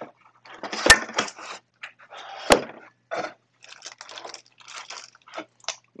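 Handling noise of espresso maker parts in a cardboard box: rustling of packaging and plastic wrap, with two sharp knocks about one second and two and a half seconds in.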